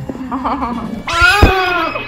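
Newborn baby crying while her hair is shampooed in a bath: a short, soft whimper, then a loud, drawn-out wail starting about a second in.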